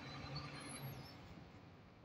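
Truck engine running with road noise heard from inside the cab while driving, with a brief high squeak under a second in.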